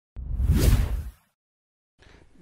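A single whoosh sound effect for a news-channel graphics transition: it starts about a tenth of a second in, swells and fades away within about a second.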